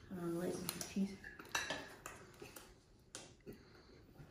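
Metal forks clinking against plates and each other in a few sharp, separate clinks as bread is taken off fondue forks and eaten.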